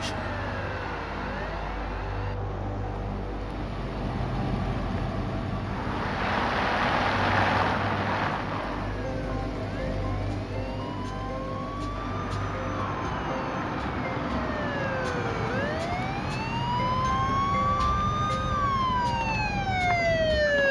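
Police siren wailing in slow rising and falling sweeps, louder in the second half, over the low rumble of a car engine and road noise. A rush of noise comes about six seconds in.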